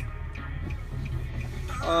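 Low steady rumble inside a car cabin while the car idles at a traffic light, with faint music playing in the background.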